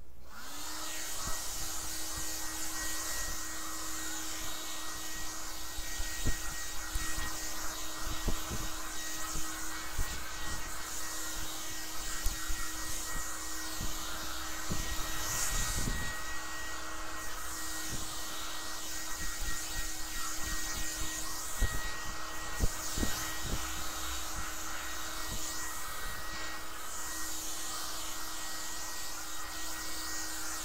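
Small electric hair trimmer running with a steady buzz while it is worked over the face and head, with scattered light knocks as it is handled.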